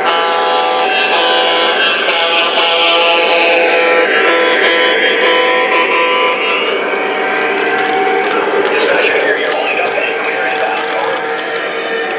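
Lionel Burlington F3 diesel model train running past on O-gauge track. Its onboard sound system plays a sustained sound of several steady tones through the first part, and rapid clicking from the wheels on the track comes through later.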